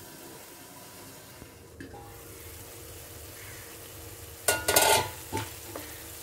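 A covered pan of tomato–onion masala sizzling softly on a low flame. About four and a half seconds in comes a short, loud burst of metal clatter and spatula scraping as the pan is uncovered and stirred.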